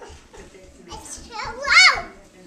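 A young child's high-pitched squeal near the end, rising and then falling in pitch.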